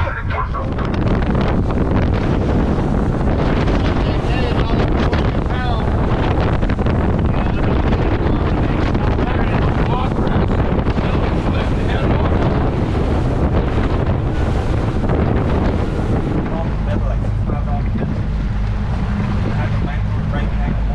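Wind buffeting the microphone over the steady noise of a boat underway at speed, with water rushing along the hull.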